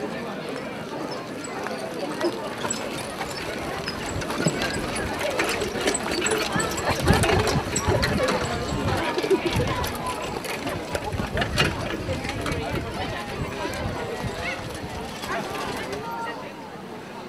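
Harness-racing trotters pulling sulkies pass close by at a trot on grass, their hoofbeats loudest about seven to eight seconds in, with people talking in the background.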